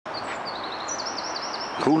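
A small songbird singing a quick run of repeated high chirping notes over a steady hiss of outdoor background noise.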